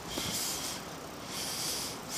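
A man breathing heavily close to the microphone, in short noisy breaths about one a second.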